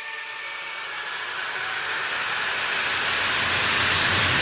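Synthesized white-noise riser in an electronic track, swelling steadily louder, with a low rumble building beneath it. The last held synth notes fade out within the first second.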